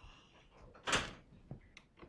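A single sharp knock about a second in, then a fainter click, against quiet room noise.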